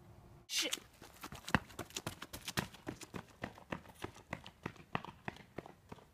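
Quick footsteps on asphalt, about four steps a second, after a short loud burst of noise about half a second in.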